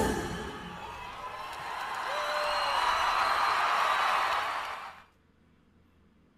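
The last notes of a live pop song ring out, then a large concert audience cheers, swelling about two seconds in and cutting off abruptly about five seconds in.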